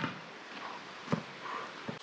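A basketball bouncing on asphalt: three thuds, with shorter gaps as it goes, the middle one the loudest.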